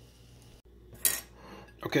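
A brief clink of tableware about a second in, over faint room tone.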